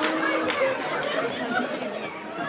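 Indistinct chatter of a cinema audience mixed with the film's soundtrack, with a sharp click about half a second in.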